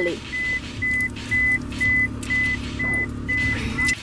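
A vehicle's warning chime: short high beeps at one pitch, evenly repeating about twice a second, over a low steady hum from the vehicle.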